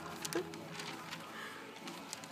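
Faint rustling and crinkling of printed paper sheets being handled and folded, with a few soft crackles near the start.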